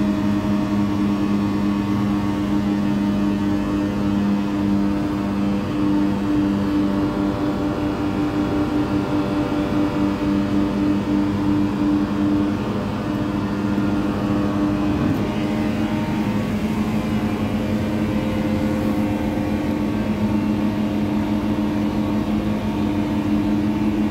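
Disc screen running steadily, its rotating disc shafts screening wet sawdust, with a constant machine hum of two low tones and fainter higher whine above.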